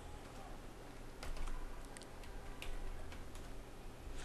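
Computer keyboard typing: a handful of faint, unevenly spaced key clicks as a web address is entered.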